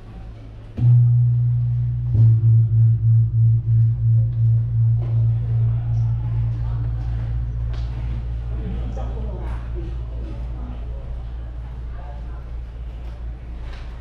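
A large, deep-toned gong struck twice, about a second and a half apart. Its low hum pulses a few times a second and fades slowly over the following seconds.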